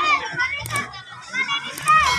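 Children's voices at play: a string of high-pitched calls and shouts that rise and fall in pitch.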